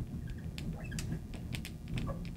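Marker pen squeaking and ticking on a glass writing board in short, quick strokes as a word is written.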